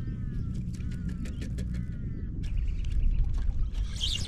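Baitcasting reel (Shimano Calcutta Conquest BFS) being wound in with a fish on: a fast run of clicks with a faint falling whine, and a short hiss about two and a half seconds in. A steady low rumble sits underneath.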